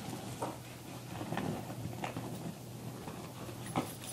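Lecture-room background during a pause: a steady low hum with a few faint knocks and shuffles scattered through it.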